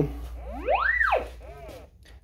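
A Leica utility locator receiver in sonde mode gives its signal tone. The tone glides steeply up in pitch and back down as the receiver passes over the sonde's big peak, then makes a smaller, lower rise and fall for a little peak.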